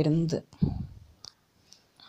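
A voice trails off about half a second in, followed by a low thump and then two short, sharp clicks about half a second apart.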